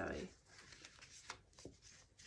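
Paper being handled: faint rustling of book pages and card, with a couple of soft taps about a second and a half in, as a small stitched paper booklet and a tea-dyed tag are picked up and turned over.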